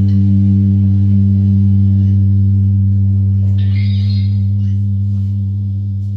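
The band's final chord ringing out: electric guitars held on one sustained low chord through their amplifiers, slowly fading, with the drums stopped.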